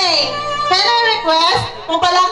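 A high voice singing in short, wavering phrases, with some music underneath.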